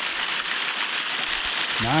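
Small waterfall: thin streams of water falling from a rock ledge and splashing onto the rocks below, a steady hiss of falling water.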